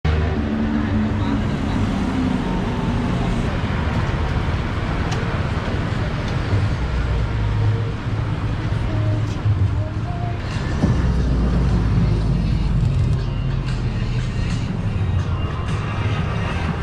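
Busy city street ambience: road traffic with a steady low rumble, mixed with people's voices.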